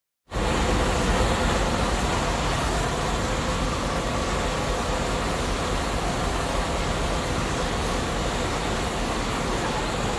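Automatic quilting production line running: a steady, even mechanical noise of machinery in operation.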